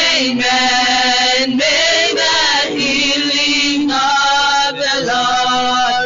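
A woman singing a worship song into a handheld microphone, in held phrases of about a second each with short breaks between them.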